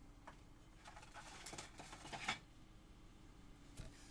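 Faint rustling and scraping as a thin pyrography panel and the white cloth wrapped around it are handled. The rustling picks up about a second in for a second or so, and there is a short click near the end.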